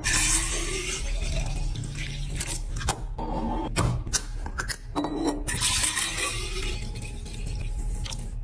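Juice poured from plastic bottles into a glass pitcher in two long pours, with short clicks and handling of a plastic bottle and cap between them.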